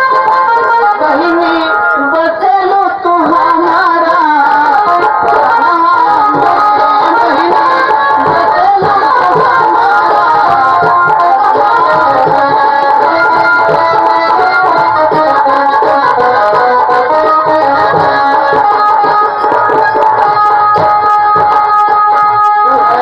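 A man singing a slow, emotional song into a stage microphone over loud instrumental accompaniment, amplified through a PA.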